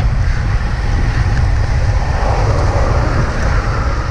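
Wind buffeting the microphone of a camera on a road bike moving at about 34 km/h: a steady heavy low rumble with road and air noise over it, and a car passing in the oncoming lane late on.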